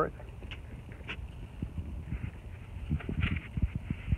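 Low, uneven rumble of wind on the microphone during handheld outdoor filming, with a few faint ticks and a brief faint higher sound about three seconds in.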